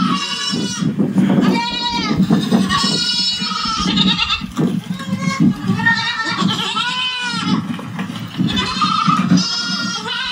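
A person's high-pitched, wavering vocal squeals, repeated again and again through the whole stretch, with lower vocal sound beneath.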